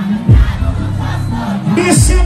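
A large crowd shouting and cheering over sound-system dancehall music. A deep, falling bass boom hits about a third of a second in.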